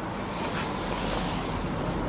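Steady rushing hiss, like wind noise on the microphone, with no distinct strokes. It grows slightly brighter and hissier from about half a second in.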